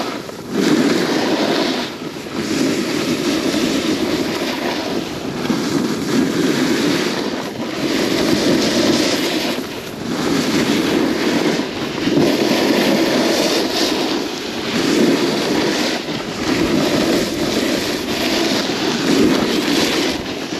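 Wind buffeting the microphone over the hiss and scrape of edges sliding on packed snow while riding down a groomed piste, swelling and easing every two seconds or so with each turn.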